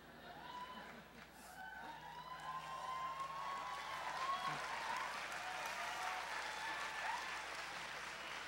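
Large audience applauding, with a few voices calling out over it; the applause builds over the first few seconds, then holds steady and eases slightly near the end.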